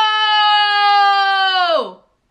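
A woman's long, high-pitched squeal of excitement, held on one note for nearly two seconds before the pitch drops away at the end.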